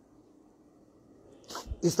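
Near silence for about a second and a half, then a short, sharp breath noise from a man just before he starts speaking again near the end.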